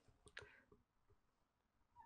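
Near silence: room tone, with a few faint clicks about a third of a second in.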